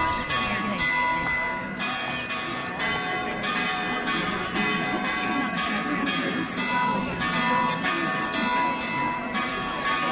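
Church bells pealing, a fresh strike every half second or so, each tone ringing on over the next, above the chatter of a large crowd.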